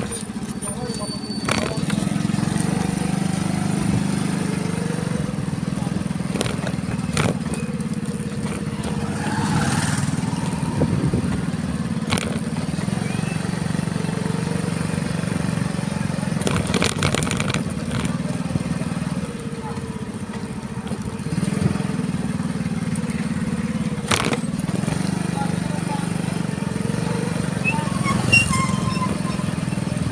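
A vehicle ridden along a road: a steady low hum that dips briefly about two-thirds of the way in, with scattered clicks and knocks.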